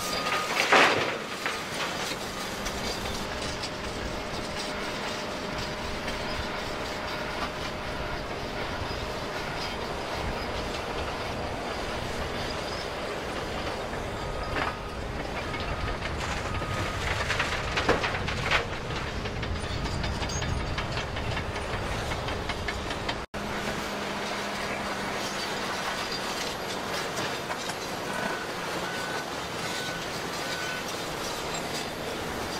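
Heavy diesel earthmoving machinery working: a Hitachi excavator and an articulated dump truck running steadily with a metallic clatter. Loud crashes of rock and sand dropping into the steel dump bed come about a second in and again around 18 seconds.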